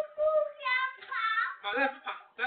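A child's high voice singing in a sing-song way, with short held notes broken by brief pauses.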